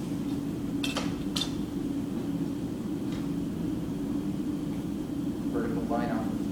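A plastic drafting triangle being handled and laid on the paper, giving two sharp clicks about a second in and a fainter one later, over a steady low hum.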